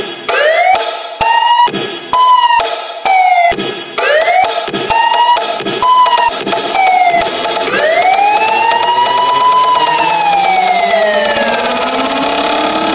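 Electronic siren-like sound effect in a DJ sound-check remix: short sweeping tones, about two a second, each starting with a sharp hit. From about eight seconds in, one long tone rises and then slowly falls, with other sweeps layered underneath.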